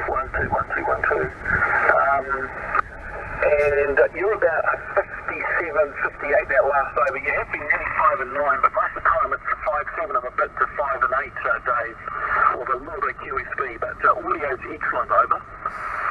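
A distant amateur station's voice received on HF single-sideband through a Yaesu FT-857D transceiver's speaker: talking steadily, thin and tinny, with nothing above the narrow voice band and a steady background hiss. The signal carries the multipath echo typical of a long-haul path.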